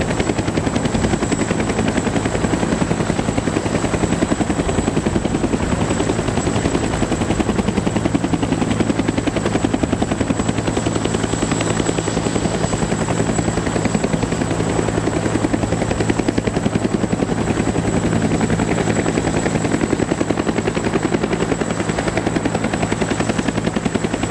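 Half-scale radio-controlled Bell 412 model helicopter flying, its rotor chopping rapidly and evenly, with a thin high whine held steady over it.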